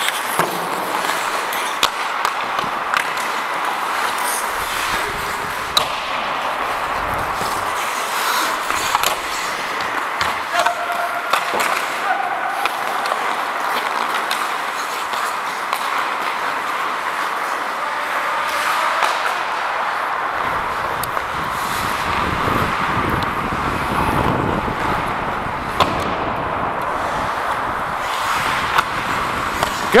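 Ice hockey play from a skating referee's helmet microphone: skate blades scraping the ice and air rushing past the mic, with sharp clicks of sticks and puck. The rumble of wind on the microphone grows in the second half.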